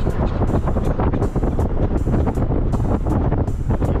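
Moving car's steady low road and engine rumble, with wind noise from the open window, under background music with a steady beat of about two a second.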